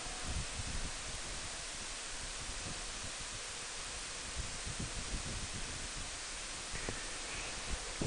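Steady wind rush and road noise from a Honda Gold Wing 1800 motorcycle riding at a constant speed on a paved road, with no distinct engine note heard.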